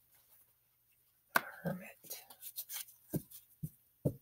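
Tarot cards being handled and shuffled by hand: a sharp tap about a second in, then a run of soft, irregular clicks and riffles.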